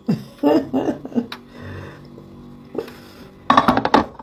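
A woman laughing about a second in, then a quieter stretch, then a short loud burst of her voice near the end.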